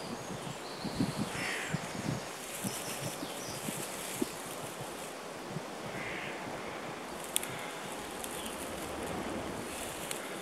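A person blowing long breaths into a dry-grass tinder bundle to bring a smouldering ember to flame, with wind on the microphone and some rustling of the dry grass.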